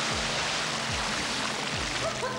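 Heavy splashing of swimming-pool water, a dense continuous rush, over background music with a steady low beat.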